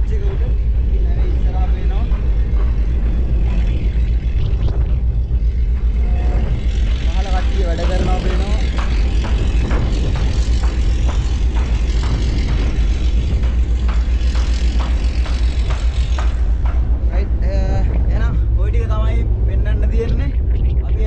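Deep, steady rumble of wind buffeting the microphone and the ship's engine exhaust at the top of the funnel, loud throughout, with a man talking over it.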